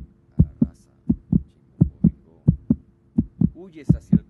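Heartbeat sound effect: paired low thumps in a steady lub-dub, a beat about every 0.7 seconds (roughly 85 a minute), over a faint steady hum.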